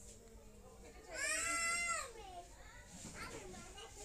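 A single high, wavering, bleat-like animal call about a second in, lasting nearly a second and dropping in pitch at its end, with a fainter call near the end.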